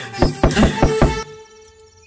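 Quick knocking on a wooden door, about five knocks within a second, over background music that fades away.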